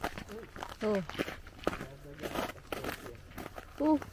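Footsteps crunching irregularly on packed snow and ice along a trail. A voice calls out a short "Oh" about a second in, and there is another brief vocal sound near the end.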